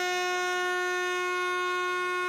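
Vehicle horn from a convoy of tractors, held in one long steady blast on a single note.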